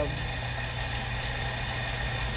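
A steady low hum with a few faint, steady high tones: background noise in a pause between a man's phrases.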